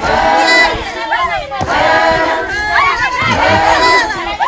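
Maasai women singing together in a loud group chant, many voices at once, with high calls that rise and fall above the singing.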